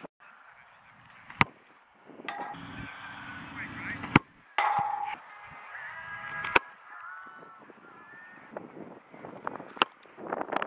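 Geese honking repeatedly in the background, with four sharp clicks spread between the calls.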